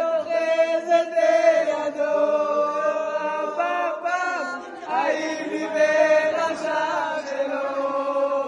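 A small group singing a song together in Hebrew, led by men's voices, holding long notes without instrumental backing.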